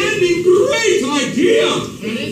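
A man's voice performing on a theatre stage, loud and continuous, with pitch that rises and falls and a few held notes.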